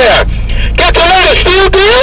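A man's voice coming through a CB radio's speaker, with a short burst of hiss about a third of a second in and a steady low hum underneath.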